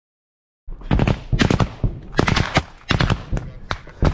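Automatic gunfire in short bursts of rapid cracks, starting just under a second in and coming in several strings, each with a brief ringing tail.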